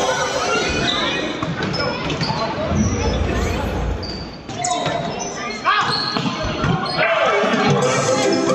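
A volleyball being struck during a rally in an echoing sports hall, with a few sharp slaps of hands and forearms on the ball, and players' voices calling out.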